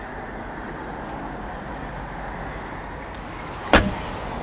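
A BMW 3 Series car door shut with a single sharp thump near the end, over a steady low rumble.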